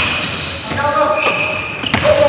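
Basketball shoes squeaking on a hardwood gym floor in short, high chirps, mixed with players' shouts, and a couple of ball bounces on the floor near the end.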